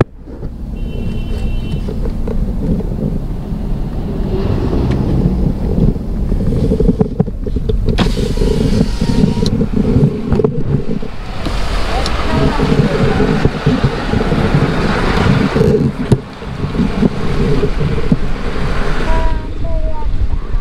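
Car driving on a highway, heard from inside the cabin: a steady low engine and tyre rumble, with road and wind noise swelling at times. The sound drops away abruptly for a moment a few times.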